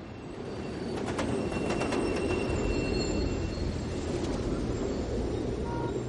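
A steady low rumble with faint, thin high squeals held for a second or two and a few sharp clicks.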